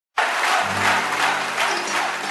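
Audience applause over a steady held instrumental drone, cutting in abruptly at the start.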